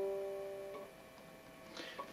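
Open G (third) string of a nylon-string classical guitar ringing out after a pluck, its note fading away within about the first second and leaving near quiet.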